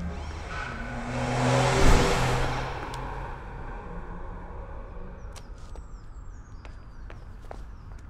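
A car driving past, its engine sound swelling to a peak about two seconds in and then fading away. After it, a quieter street with a few light footsteps.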